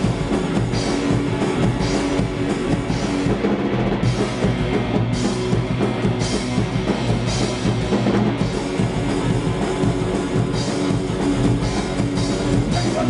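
Hardcore punk band playing a song live in a rehearsal room: electric guitars and a drum kit with cymbals crashing, loud and steady.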